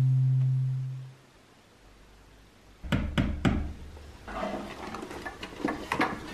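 A strummed guitar chord dies away during the first second, then a pause. A few seconds in come three sharp knocks, then scattered clicks and rustling handling noises.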